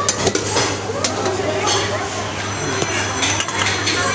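Stainless-steel serving tongs and spoons clinking against steel buffet bowls and lids: several short, light metallic clinks scattered through, over a background of voices.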